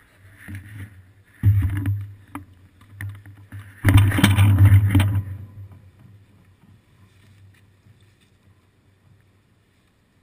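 Rumble and rattle picked up by a camera mounted on a bicycle seat as the bike rides over the street, in two loud stretches, one about a second and a half in and a longer one about four seconds in, then much quieter. A low steady hum runs underneath.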